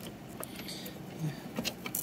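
Faint handling noise from the hinged metal hard-drive bracket of a small desktop computer being swung up: a few light clicks and rattles.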